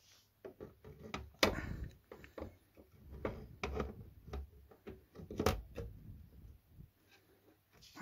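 Handling noises of a 2.5-inch hard drive being fitted into a PC case: scattered light clicks and knocks, the loudest about a second and a half in and again around five and a half seconds.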